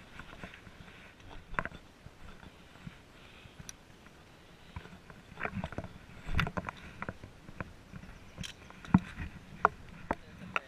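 A hiker's footsteps on river stones and a dirt trail, irregular crunches and knocks with handling bumps from the handheld camera; the loudest knocks come in the second half.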